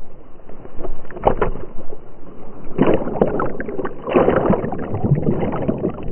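Lake water splashing and sloshing around a swimming dog, picked up by a camera strapped to its back at water level. The sound comes in uneven surges, with stronger splashes about a second in, around three seconds in and just after four seconds.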